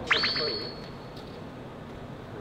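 A short electronic sound effect: a quick upward pitch sweep that settles into a high held tone and fades out within a second. It is followed by faint room noise.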